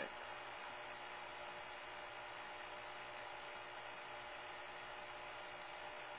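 Steady hiss with a faint, even hum underneath, unchanging throughout.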